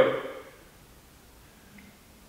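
A man's voice trailing off at the end of a phrase in the first half-second, then a pause of faint, quiet room tone.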